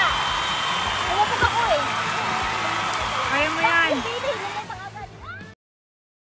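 Steady rush of a small waterfall pouring into a pool, with voices calling out over it. The sound fades and then cuts off abruptly to silence about five and a half seconds in.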